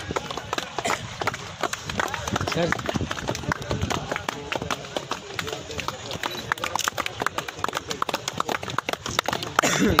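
Scattered hand clapping, sharp irregular claps several times a second, over murmured crowd chatter, with a short laugh near the end.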